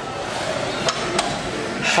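Seated leg press machine's weight stack clanking, two short sharp metallic knocks about a second in, as the set ends and the weight is let down, over a steady hiss of gym room noise.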